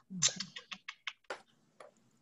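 Computer keyboard typing: a quick run of key clicks, about half a dozen over a second and a half, then stopping.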